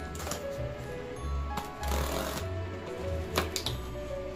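Background music with a pulsing bass line, over the crackle and rip of packing tape being pulled off a cardboard box and a flap lifted: a few short rips, the longest about two seconds in.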